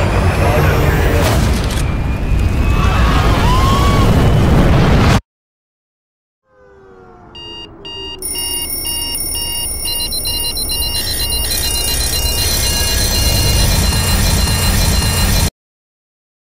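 A loud, dense noise cuts off suddenly about five seconds in. After a second of silence, a digital alarm clock beeps at a high pitch, about twice a second, over a low rising swell, and stops suddenly near the end.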